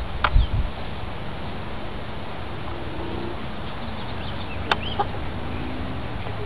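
Steady outdoor background noise with faint bird calls about halfway through, and two sharp clicks, one just after the start and one near the end.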